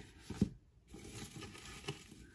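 Hands rustling and crinkling through crinkle-cut paper shred packing filler in a small cardboard box, with a short knock about half a second in. Faint.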